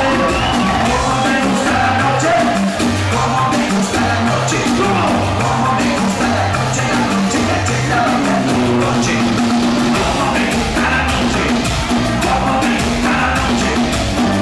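Live band music played loud through a club PA, with a vocalist on the microphone over a steady, repeating bass beat.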